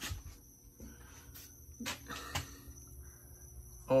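Quiet room with faint footsteps and a few soft knocks on a concrete floor, and a brief murmur from a man's voice about two seconds in.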